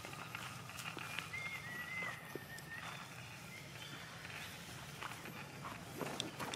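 Quiet outdoor ambience with faint scattered rustles and clicks, and a thin, wavering whistle-like call lasting over a second, starting about a second in.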